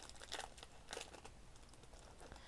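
Faint crinkling of a thin plastic sleeve as a pin on its card is worked out of it, with a couple of brief rustles, about a third of a second and a second in.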